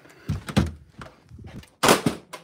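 A room door being swung open, with soft knocks and handling noise, then one sharp, louder knock near the end.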